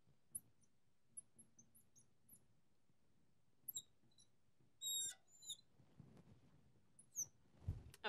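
Marker tip squeaking against the glass of a lightboard while writing: scattered short, high squeaks, faint overall, with the busiest run about five seconds in, and a soft thump just before the end.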